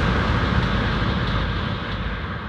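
Fading end of a progressive trance track: a dense rumbling noise wash dying away steadily as its high end closes off.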